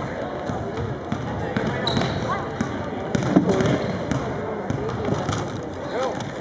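A basketball being dribbled on a hardwood gym floor, with repeated bounces, amid people talking.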